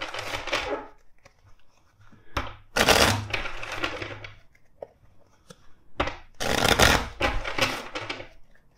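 A tarot deck being shuffled by hand: three rustling bursts of cards, each about a second long, a few seconds apart.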